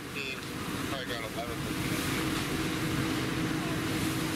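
Fire engine pump running with a steady hum while a hose line flows water, the rushing noise growing louder about two seconds in. Brief voices are heard in the first second or so.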